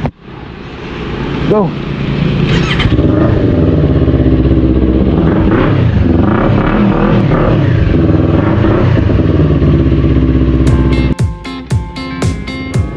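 Motorcycle engine running loudly and steadily, building up over the first two seconds. A shout of "Go!" comes just after the start, and strummed guitar music cuts in near the end.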